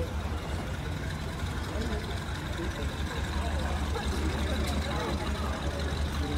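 A vehicle engine idling with a steady low rumble, with faint voices of people nearby.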